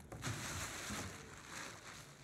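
Soft rustling of a uniform being handled and taken out, a steady papery-cloth noise that fades toward the end.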